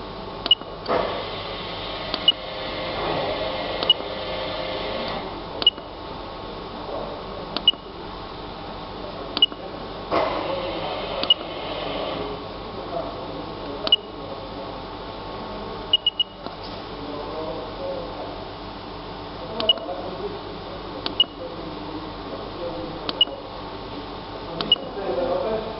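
Boiler controller's keypad beeping at each button press: a short, high beep with a click every second or two, about a dozen in all, with two quick ones together about two thirds of the way in, as the settings menu is stepped through. A steady background noise runs underneath.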